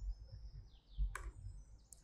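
A couple of soft keystrokes on a laptop keyboard, with faint, high, short falling chirps in the background.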